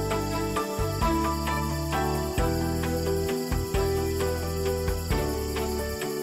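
Instrumental background music with a steady beat and bass line, laid over a steady, high-pitched chorus of insects such as crickets.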